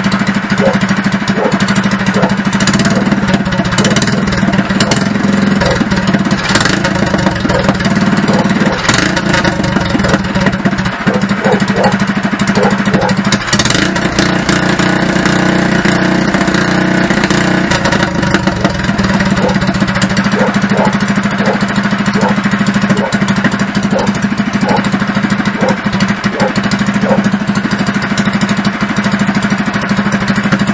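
Small single-cylinder go-kart engine running steadily with a new exhaust pipe and air filter on the stock carburettor jet; the owner felt a slight hesitation in it.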